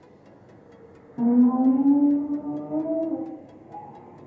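Recorded whale-song-like sound playing over loudspeakers: it starts suddenly about a second in as loud, drawn-out moaning tones that slide slowly in pitch, then eases off near the end.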